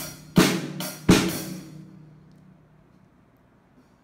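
Acoustic drum kit with Solar cymbals struck three or four times in quick succession, drums and cymbal together. The cymbal rings out and fades, and the playing breaks off because the student has forgotten the pattern.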